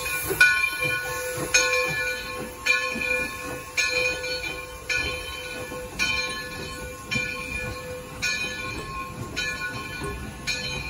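Steam locomotive No. 60's bell ringing about once a second as the engine pulls out, growing fainter as it moves away.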